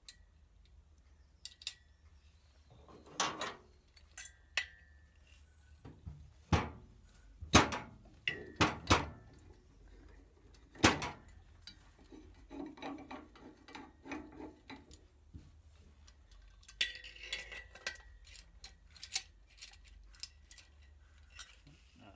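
Irregular metallic clicks and knocks as an air-cooled Citroën 2CV cylinder head and its valves are handled and set down on a workbench, with a few sharper knocks in the middle and brief metal ringing.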